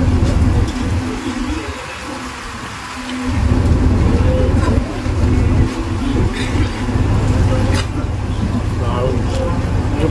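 Wind buffeting the microphone in gusts, easing for a couple of seconds about a second in, over the steady hum of a boat engine, with voices in the background.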